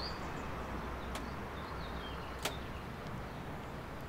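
Outdoor ambience: a few faint, short chirps from small birds over a steady low hum, with two sharp clicks, about a second in and again about two and a half seconds in.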